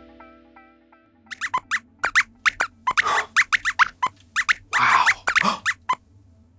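The last notes of a music jingle ring out and fade in the first second. Then a rapid string of short robotic squeaks and chirps, sliding up and down in pitch, chatters for about five seconds: the squeak voice of a robot lab rat puppet.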